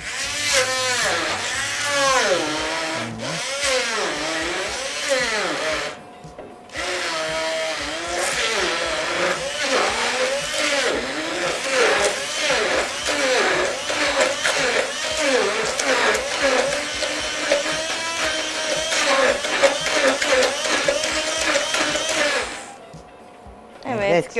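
Electric hand-held stick blender running in a jug, puréeing banana and eggs; the motor pitch dips and recovers again and again as the blades load up. It stops briefly about six seconds in, then runs on and switches off shortly before the end.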